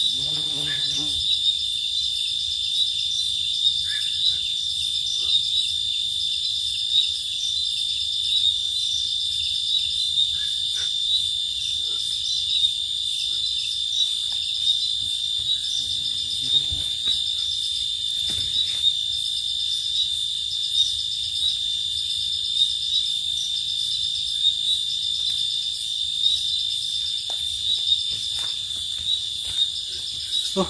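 A chorus of crickets trilling steadily in a high, finely pulsing drone that fills the whole stretch, with a few faint scuffs and knocks underneath.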